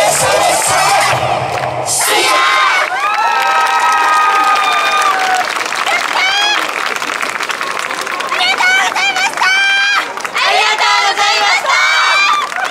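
Dance music with a beat ends about two seconds in, and a team of festival dancers then shouts several long, held calls together, followed by shorter bursts of shouting and cheering.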